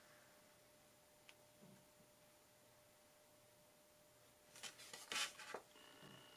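Near silence: room tone with a faint steady hum, and a few brief soft rustles close together about five seconds in.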